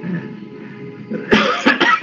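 A person coughing, a brief burst of two or three coughs starting about a second and a half in.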